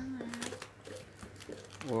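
Packaging crinkling and crackling as a parcel box is being opened by hand: a run of small, irregular rustles.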